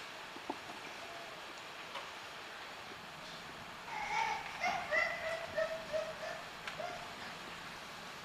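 Indistinct voices of actors talking on stage, heard faintly from about four seconds in for around three seconds over steady room hiss, with a few light knocks or steps early on.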